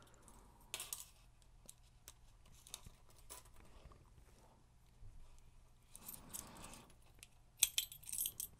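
Faint, scattered small metallic clicks and ticks of a steel split ring being pried open and worked with split ring pliers, with a louder pair of clicks near the end.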